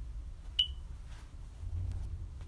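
A single short, sharp click with a brief high ring about half a second in, over a low steady room rumble.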